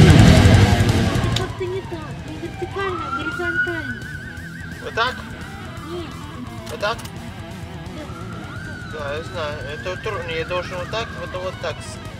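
A cordless reciprocating saw cutting into a wooden stump, loud for about the first second and a half before it stops. After that come quieter wavering, warbling voice-like tones over light background music, with a few short clicks.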